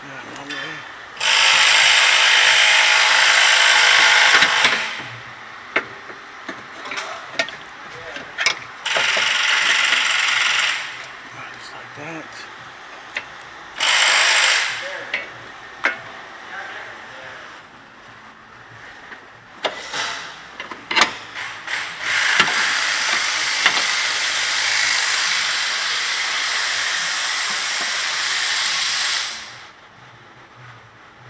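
A power ratchet running in four bursts, the last about seven seconds long, with sharp clicks of tool handling between them, as the lower control arm's nuts and bolts are run down.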